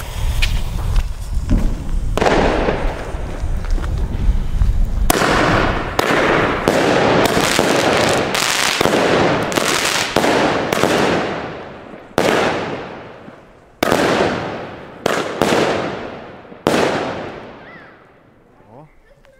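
A small Klasek Lumpic 9-shot, 20 mm firework battery firing: its fuse hisses for about two seconds, then a series of sharp bangs follows, each dying away over a second or so. They come close together in the middle and further apart towards the end.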